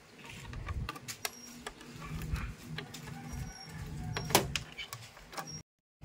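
Scattered clicks and light knocks of a screwdriver and hands working at the plastic terminal compartment of a split-type air conditioner's indoor unit, the sharpest click about four and a half seconds in, over a low steady hum. The sound cuts off abruptly just before the end.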